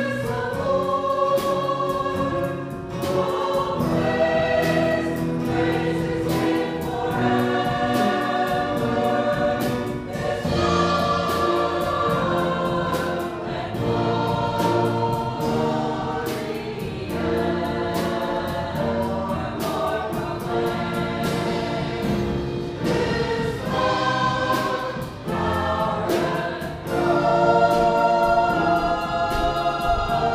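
A church choir of men and women singing in parts with instrumental accompaniment that keeps a steady beat.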